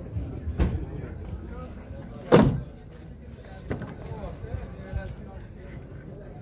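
A truck door being handled: a few light knocks and clicks, with one loud thump of a door shutting about two and a half seconds in.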